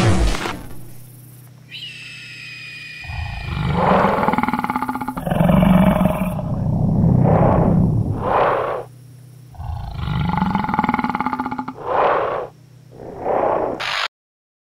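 Horror-film sound design: a series of about seven swelling creature growls and roars, each rising and falling over a second or so, layered over an eerie sustained droning music score. Everything cuts off suddenly at the end.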